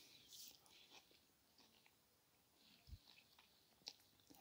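Near silence with faint chewing of a mouthful of doner kebab, and a soft low knock about three seconds in.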